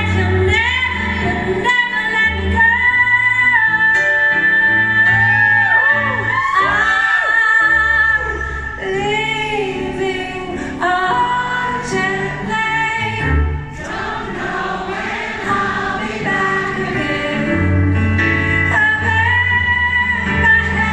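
A woman singing a slow ballad live over acoustic guitar, with long held notes and wavering runs in the middle.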